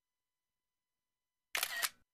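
Dead silence, then about a second and a half in a short noisy sound lasting under half a second.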